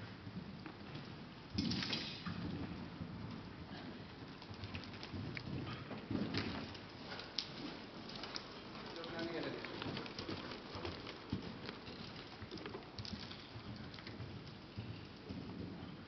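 Riding-arena ambience: a steady noisy hiss with scattered soft thuds from a cantering horse's hooves on the sand footing, and faint distant voices.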